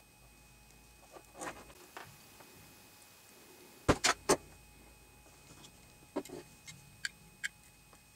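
Hand tools and coaxial cable being handled on a wooden workbench while the cable end is stripped: three sharp clicks close together about four seconds in, then a few fainter clicks.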